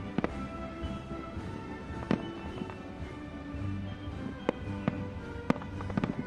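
Aerial fireworks going off over music: several sharp, separate bangs, the loudest about two seconds in and near the end. The music holds steady sustained notes underneath.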